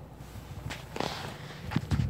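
Handling noise: a few soft knocks and a brief rustle, over a low steady hum from the car's 1.4 TSI petrol engine idling, heard from inside the cabin.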